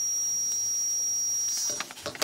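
A steady, high-pitched electronic tone at one pure pitch, held for about two seconds and cutting off near the end, followed by a few light paper clicks.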